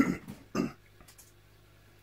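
A man coughing to clear his throat: two short bursts about half a second apart, the first louder.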